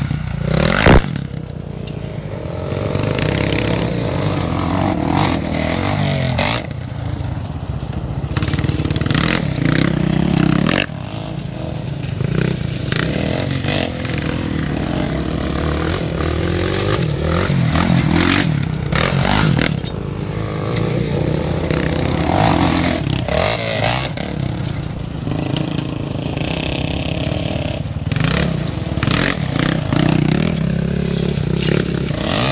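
Quad bike engines revving up and down, rising and falling in pitch throughout, with tyres scraping over gravel. About a second in, a single loud thump as a quad lands from a jump.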